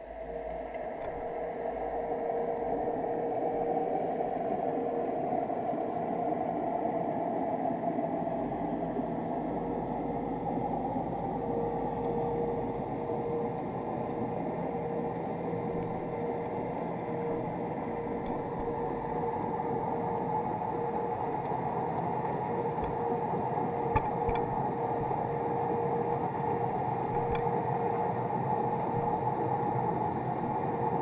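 Steady, muffled underwater noise heard through a sealed action-camera housing, with a low steady hum running through it and a faint click or two near the end.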